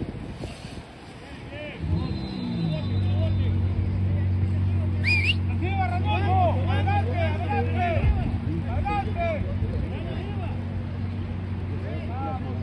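A steady, low engine-like hum sets in about two seconds in and holds unchanged, with distant shouting voices over it.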